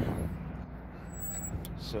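Low, steady rumble of road traffic at an intersection, with a couple of faint clicks near the end.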